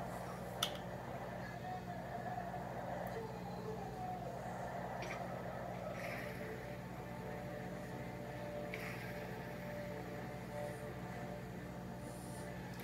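A quiet, steady low hum with faint wavering tones above it, and a soft click about half a second in.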